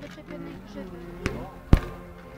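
Two sharp knocks about half a second apart, the second louder, over faint background voices.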